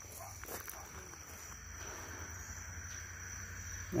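Faint outdoor ambience: a steady high-pitched insect chorus over a low, even rumble.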